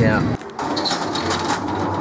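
Low car-cabin road rumble under a spoken 'yeah' that cuts off abruptly a third of a second in, followed by a run of irregular clicks and rattles from a small mechanism.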